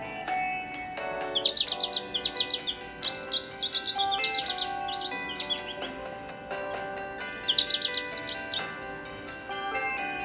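Songbird singing: a rapid run of high chirped notes starting about a second in and lasting several seconds, then a shorter run near the end, over background guitar music.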